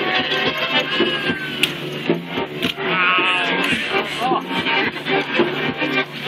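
Flute and violin playing a live tune together, with wavering, gliding notes.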